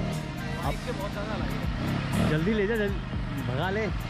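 Small ATV engine running steadily, mixed under people's voices and background music.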